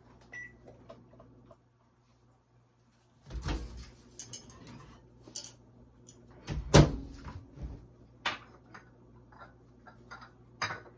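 Kitchen microwave oven door being opened and shut, with clicks and clunks of the door and a glass cup being handled; the loudest clunk comes about two-thirds of the way in.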